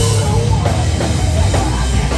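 Live rock band playing loud, the drum kit up front with cymbal and snare hits over a heavy low end.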